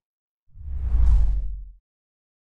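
A single whoosh transition sound effect with a low rumble under it. It swells in about half a second in, peaks, and fades out shortly before the end.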